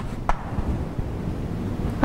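One chalk stroke on a blackboard, short and sharp, about a quarter second in, over a low rumble on the microphone.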